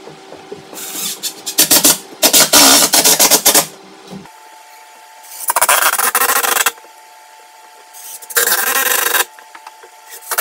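Cordless drill/driver driving screws through a wood brace into the wall studs. It runs in four loud bursts of one to one and a half seconds, with short pauses between.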